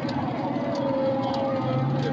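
A car engine's rapid, even pulsing with a faint steady whine above it.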